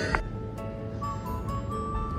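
Background music: a melody of held notes.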